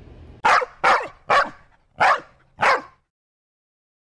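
A dog barking five times in quick succession, each bark short and loud.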